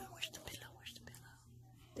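Cloth pillow being handled and rustled with quiet whispered muttering, most active in the first half-second, over a faint steady low hum.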